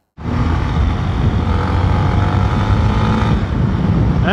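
Honda XRE motorcycle's single-cylinder engine running at a steady pace while it is ridden, with wind rushing over the helmet-mounted camera. The sound cuts in abruptly just after the start.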